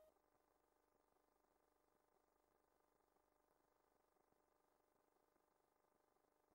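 Near silence: the song has ended and nothing is heard.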